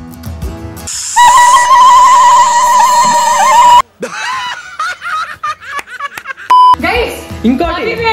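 Edited soundtrack: soft background music, then a very loud, held high-pitched tone with a wavering pitch for nearly three seconds that cuts off abruptly. A snippet of film dialogue follows, then a short beep, then excited voices over music.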